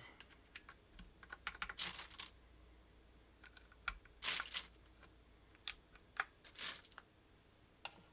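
Plastic SA-profile keycaps being pressed down onto Cherry MX Black switches of a mechanical keyboard, giving irregular clacks: a cluster in the first couple of seconds and a few louder ones between about four and seven seconds in.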